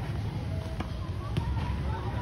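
Tennis ball struck by a racket and bouncing on a clay court: two sharp knocks a little over half a second apart, over a steady low rumble.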